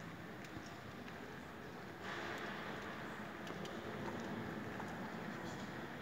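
Steady ambient room tone of a large, echoing stone church interior, with scattered faint clicks; the background noise gets slightly louder about two seconds in.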